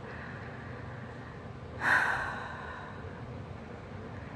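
A woman takes one heavy breath, sudden about two seconds in and trailing off over about a second, over a faint steady room hum.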